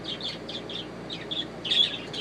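A bird giving a quick series of short, high chirps, about four a second, with the loudest chirp near the end.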